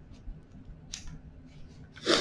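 Quiet room tone with one brief, soft noise about a second in and a few faint ticks.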